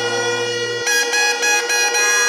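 Hungarian folk bagpipe (duda) playing a tune over a steady drone. Under a second in, the sound changes abruptly: the lowest note cuts out and the melody carries on above the remaining drone.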